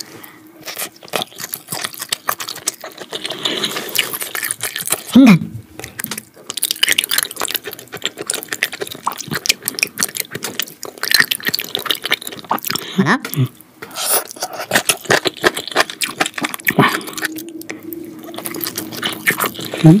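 Close-miked wet chewing and squishing of raw beef sashimi: a dense run of small, irregular mouth clicks and smacks.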